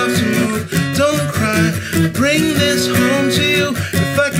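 Steel-string acoustic guitar in drop D tuning, fingerpicked in a busy, flowing pattern of single notes and chords.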